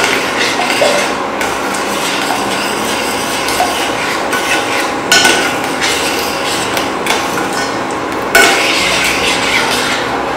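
Metal spoon stirring and scraping around a stainless steel pot of boiling syrup, the syrup bubbling throughout. The spoon knocks sharply against the pot a few times, loudest about five and eight seconds in.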